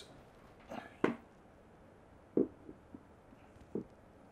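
Handling noises from a heavy statue bust being held and positioned over its base peg: a few short knocks and bumps, the loudest about a second in.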